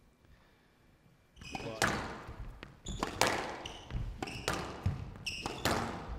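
Squash rally: a series of sharp strikes of racket on ball and ball on the court walls, starting about a second and a half in and coming every half second to a second, in a reverberant hall.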